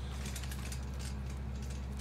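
Electric utility cart driving over bumpy ground: a steady low motor hum with rapid clicking and rattling from the empty cart frame.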